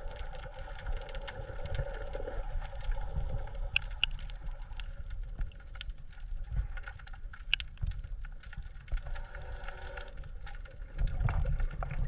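Muffled underwater sound from a camera held below the sea surface: a low rumble of moving water with scattered small clicks and a faint steady hum. It grows louder with heavier low thumps near the end.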